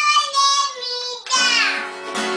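A two-year-old boy singing in a high voice: a couple of short held notes, then a longer note that slides down in pitch. Acoustic guitar strumming picks up again under him about a second and a half in.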